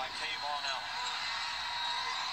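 Basketball TV broadcast playing faintly through a phone's small speaker: a commentator talking over steady arena crowd noise, thin and without bass.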